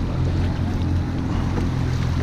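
A boat's engine idling with a steady low hum, with wind noise on the microphone.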